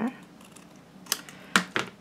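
Scissors clipping through doubled sheets of patterned paper: a single sharp click about a second in, then a quick cluster of snips and clicks near the end.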